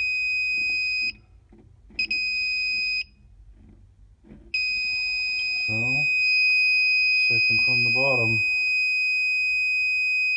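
Klein Tools ET300 circuit breaker finder receiver sounding a high, steady electronic tone. It gives a tone of about a second, falls silent, gives a second one-second tone, then holds a continuous tone from about halfway through. The held tone, with the green arrow lit, signals that the receiver has located the breaker feeding the circuit where the transmitter is plugged in.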